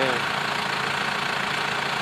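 Tractor diesel engine idling steadily with an even low hum.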